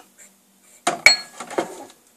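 Steel balancing arbor and its fittings clinking against a motorcycle flywheel as they are fitted together: a few sharp metal clinks about a second in, one of them ringing briefly, then softer knocks.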